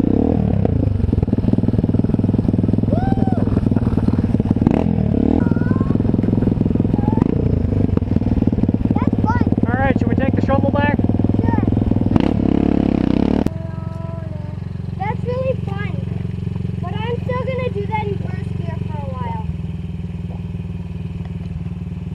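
Honda CRF50F mini dirt bike engine running steadily while ridden, with voices over it. About 13 seconds in it cuts off suddenly to a quieter, steady low engine hum.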